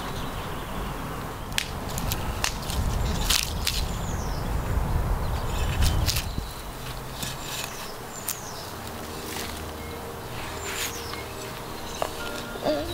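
Small hand trowel digging into garden soil: short irregular scrapes and clicks as the blade works the earth. Birds chirp now and then.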